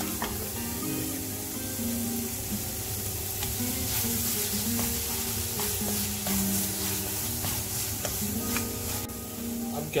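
Black carrot halwa sizzling in a pan while a spatula stirs and scrapes through it, in the last stage of cooking it down until dry. Soft background music with held notes plays underneath.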